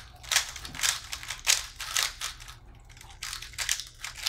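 Two 3x3 speedcubes being turned fast at the same time: a dense, irregular clatter of plastic clicks as the layers snap round.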